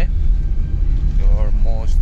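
Steady low road and engine rumble heard inside the cabin of a small Suzuki hatchback while driving, with a few spoken syllables near the end.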